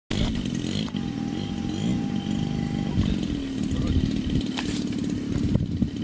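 CRRC-Pro GF50i 50cc single-cylinder two-stroke petrol engine of a large RC model plane running steadily with the plane on the ground, its pitch wavering slightly.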